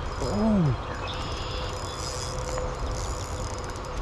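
Small spinning reel working against a hooked rainbow trout that is fighting hard: a steady whir with faint clicking as the line is reeled and pulled. A short hummed 'mm' comes from the angler just after the start.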